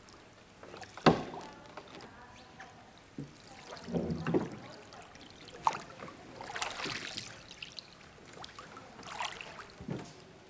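A gondola's wooden oar being worked in its forcola oarlock, with water swishing at the strokes; a sharp wooden knock about a second in is the loudest sound, and further swishes and splashes follow every few seconds.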